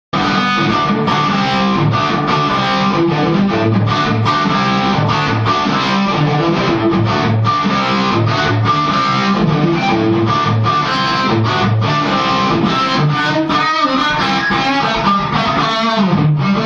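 Electric guitar played through a Ceriatone Jubilee 2550 valve amp head (a clone of the Marshall Silver Jubilee 2550) and its speaker cabinet, a continuous loud rock riff of chords and single notes.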